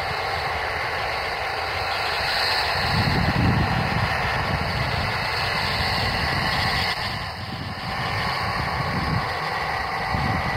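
Twin jet engines of a Dassault Falcon 2000 business jet running at low taxi power as it rolls along the runway after landing: a steady jet noise, with gusts of wind buffeting the microphone.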